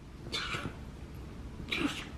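Seven-month-old baby boy giving two short, soft squeals, one about a third of a second in and one near the end.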